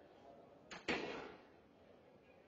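A door shutting: two knocks in quick succession, the second louder, with a short ring after.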